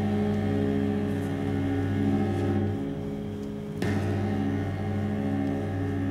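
Dark horror-film score: low, sustained droning tones, with one sharp hit about four seconds in that sets off a fresh swell of the drone.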